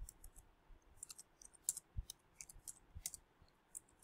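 Computer keyboard typing: a run of faint, irregular key clicks, several a second, as a short word is typed.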